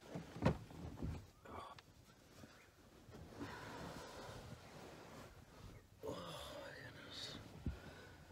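Blanket and bedding rustling as a person climbs into bed and pulls the covers up, with a few soft knocks against the camper bed about half a second in, a second in and near the end.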